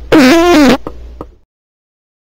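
A short comic meme sound effect: one loud, wavering, pitched blast lasting about half a second over a low rumble, followed by two short clicks, then it cuts off.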